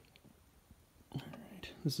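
Quiet for about a second, then a man's soft speech in the second half.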